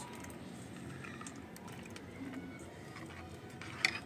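Quiet handling sounds as chopped dry fruits are dropped into a brass pot of milky kheer and stirred with a long steel spoon, with small scattered clicks. A single sharp clink of the spoon against the pot comes just before the end.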